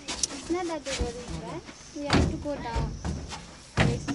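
People talking briefly, with a few sharp knocks or thumps; the loudest knock comes near the end.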